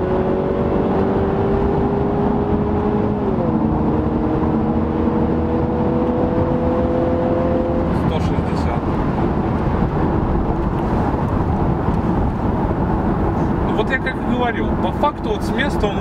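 Infiniti Q50's turbocharged engine heard from inside the cabin, pulling under acceleration: its pitch climbs, drops suddenly with an upshift about three seconds in, then climbs again until the driver lifts off about halfway through. Steady tyre and road noise remains after that.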